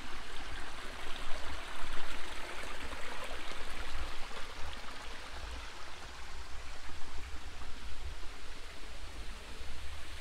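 Shallow stream flowing and trickling over rocks, with a low rumble underneath.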